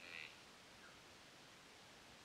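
Near silence: a faint steady hiss, with a brief faint high-pitched sound at the very start.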